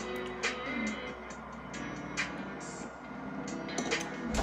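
Soft background music playing steadily, with a few short sipping and swallowing sounds as amber ale is drunk from a glass.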